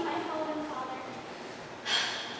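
A woman's voice trailing off faintly, then a sharp, noisy intake of breath, a gasp, near the end.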